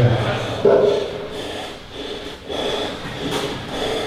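A man straining through a weight-training set: a low grunt at the start, then a few short, forceful exhales.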